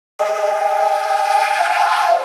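Electronic music intro: a single held chord rich in overtones, processed through a vocoder, starting a moment in and holding steady with no bass underneath.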